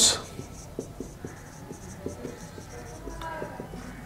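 Marker pen writing on a whiteboard: light scratching with small ticks as strokes start and stop, and a brief squeak about three seconds in.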